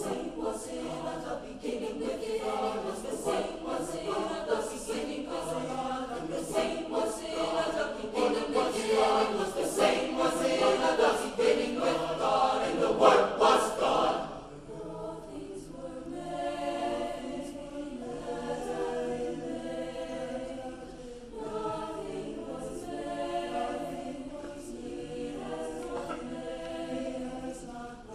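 Mixed choir of high-school voices singing together under a conductor, full and loud at first, then dropping suddenly to a softer passage about halfway through.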